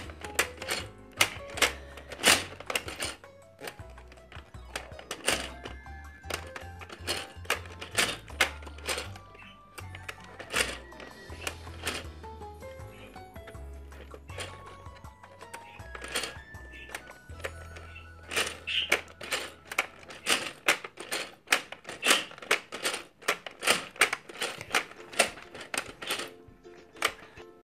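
Background music with a low bass line that drops out about three quarters of the way through, over many sharp, irregular clicks and taps of the hollow plastic toy cow being handled and pressed.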